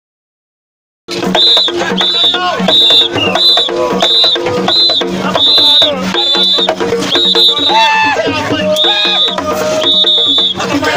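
Street procession music that starts abruptly about a second in: drumming with a high shrill note repeated about twice a second, and voices chanting over it.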